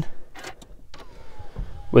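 Clicks from an Audi RS7's controls as the ignition is switched on without starting the engine, then a short electric whine falling in pitch as the car's systems power up.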